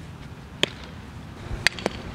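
Sharp pops of a softball striking leather gloves and a bat during infield drills: one pop about half a second in, then two close together near the end, the middle one the loudest.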